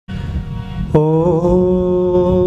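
Harmonium playing sustained, reedy chords as the bhajan opens. A new, louder chord comes in suddenly about a second in and is then held steady.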